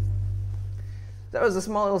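Lowrey Palladium electronic organ's last low bass note dying away over about a second and a half, before a man starts talking.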